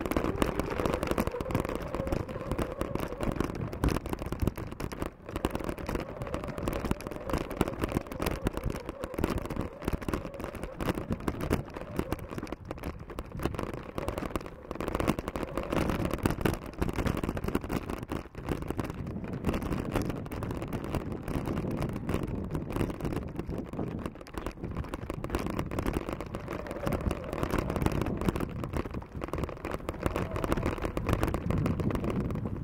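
Steady rumble and wind buffeting on the microphone while riding a bicycle along a rough dirt track, with many small jolts and knocks from the bumps.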